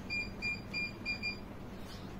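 Five short, high electronic beeps in quick succession, about three a second, stopping about a second and a half in.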